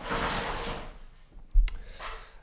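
Handling noise from a person moving at a desk: a brief rustling swish, then a single sharp knock with a dull thud about a second and a half in.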